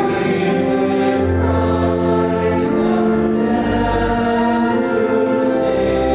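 Congregation singing a hymn in long held notes, over steady low accompanying tones.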